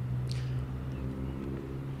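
A motor vehicle's engine running steadily nearby, a low even hum.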